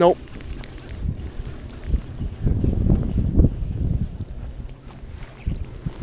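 Wind buffeting the microphone on an open boat, an uneven low rumble that gusts up around the middle.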